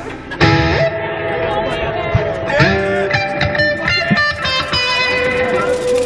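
Amplified electric guitar playing live, with chords and held notes that change every second or two, and voices shouting over it.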